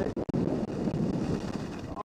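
Wind rushing over the microphone of a camera carried by a skier on the move, mixed with the hiss of skis sliding on packed snow.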